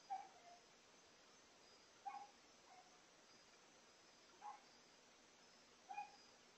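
An animal calling in short, repeated calls, four of them about two seconds apart, some trailed by a weaker lower note, over a near-silent background.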